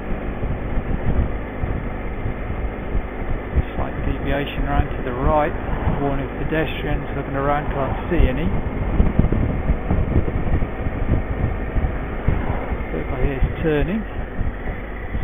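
Motorcycle engine running steadily at road speed, with wind and road rumble on the microphone.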